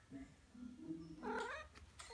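Maine Coon cat vocalizing: low, drawn-out calls, then one that rises in pitch near the end.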